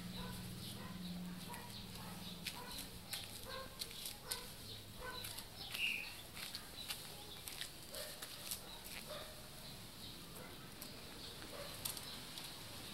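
Faint short animal calls repeating in the first half, with one brief higher call about six seconds in, over scattered light clicks and rustles.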